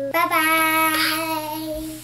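Young children singing a drawn-out "bye-bye", one long held note.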